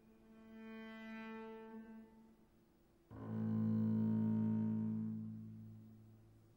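Two long held low notes from the orchestra: a soft one that swells and fades, then a louder, lower one that enters sharply about three seconds in and slowly dies away.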